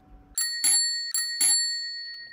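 A small metal bell struck four times in two quick pairs, its high ringing tone carrying on after the last strike.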